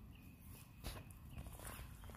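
Quiet outdoor background with a faint, short high chirp repeating two or three times a second and a few soft clicks such as footsteps, the clearest about a second in.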